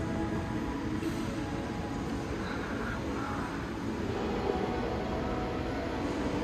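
Steady ambience of a large indoor shopping hall: a low rumble with distant crowd murmur and faint background music.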